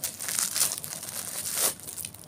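Thin plastic packaging bag crinkling and crackling as it is handled in the hands.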